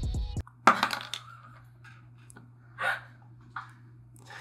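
Light handling of a cocktail glass and a cinnamon stick: a sharp clink less than a second in, a few small ticks, and a short breathy sound about three seconds in. A faint, steady low hum runs underneath.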